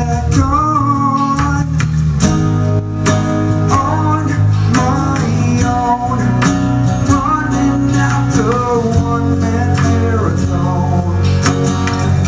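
A man singing live over a strummed acoustic guitar, with the strums going on steadily between his sung lines.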